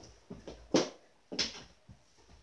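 Two sharp knocks a little over half a second apart, the first the loudest: plastic mini hockey sticks and ball clattering as two players scramble for the ball on a carpeted floor.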